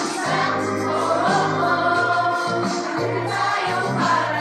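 A group of men, women and children singing a Christmas carol together, holding long notes.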